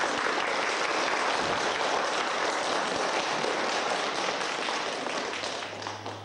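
A theatre audience applauding: steady clapping that tails off near the end.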